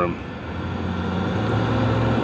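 A motor vehicle's engine running close by, a low steady hum that grows louder over the first second and a half and then holds.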